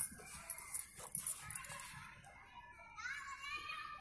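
Faint handling of a paper workbook, pages being turned by hand with a few light clicks and rustles in the first part. From about halfway in, a faint high-pitched voice sounds in the background.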